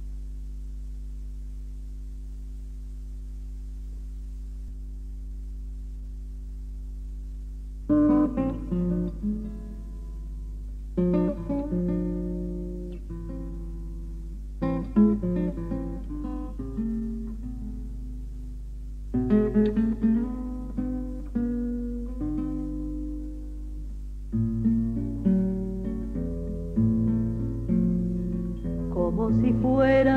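A steady low hum from a cassette transfer carries the silent gap between two songs for about eight seconds. Then a guitar starts a plucked introduction, played in short phrases with brief pauses between them.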